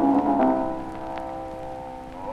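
Music from a 1904 acoustic disc recording: the accompaniment moves briefly, then holds a chord that slowly fades, under the steady crackle and hiss of the old disc's surface noise.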